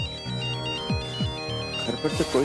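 Mobile phone ringtone: a quick electronic melody of high beeping notes that hops back and forth between two or three pitches. Under it runs background score music with a few low falling booms.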